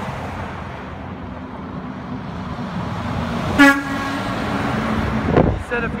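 Steady road traffic noise, with one short vehicle horn toot about three and a half seconds in.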